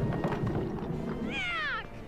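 An animated creature's high-pitched cry, sliding down in pitch for about half a second near the end, heard over the film's rumbling orchestral score.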